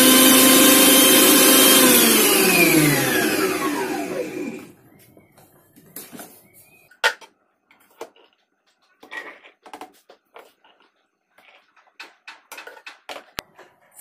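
Usha food processor motor running with its juicer attachment on pomegranate seeds, a steady whine, then switched off about two seconds in and winding down with falling pitch to a stop by about four and a half seconds. After that only a few faint clicks and knocks.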